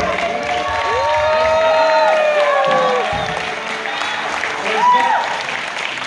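Applause from the congregation and singers as a worship song ends, with voices over the clapping.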